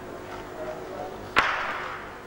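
A single sharp drum hit about one and a half seconds in, ringing out briefly in the large hall over a low, steady background.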